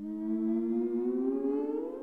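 Electronic music: a synthesized tone with several overtones starts suddenly out of silence and glides slowly upward in pitch like a siren, beginning to fade near the end.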